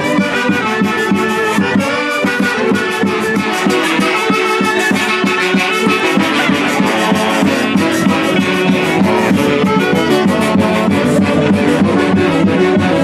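Brass band music: saxophones and other brass playing a tune over a steady drum beat.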